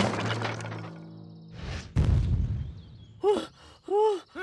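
Cartoon soundtrack: a held music chord fades out, then a short whoosh ends in a low thud about two seconds in. Near the end come two short wordless character vocalisations, each rising then falling in pitch.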